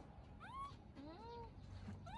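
Baby macaque giving three short cries, each rising and then falling in pitch, starting about half a second in.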